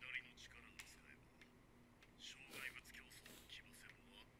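Very faint, thin, whisper-like speech from the anime episode playing quietly in the background, in two short stretches: one right at the start and a longer one about halfway through.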